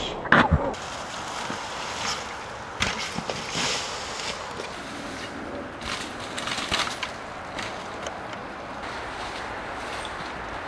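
Mountain bike rolling down a dirt trail strewn with dry leaves: a steady crunch and rustle from the tyres, with scattered sharp knocks and clatters as the bike hits bumps.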